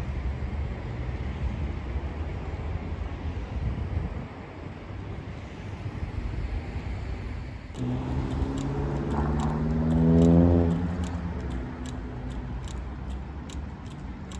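Road traffic at a junction: a car's engine note rises as it accelerates past, loudest about ten seconds in, then fading. Before that there is a low, even rumble of traffic and wind. Light regular clicks, about two a second, run through the second half.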